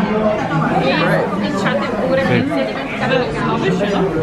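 Indistinct, overlapping chatter of several people talking at once around a restaurant table.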